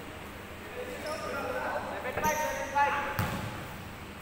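Basketball bouncing on a hardwood court in a large gym hall, with players' voices calling out. Several sharp bounces come between about two and three seconds in, the loudest part.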